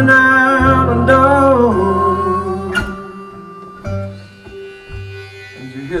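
Live acoustic blues on harmonica and slide-played resonator guitar: long bending harmonica and vocal notes over steady low guitar notes, thinning to sparser, quieter guitar notes after about three seconds.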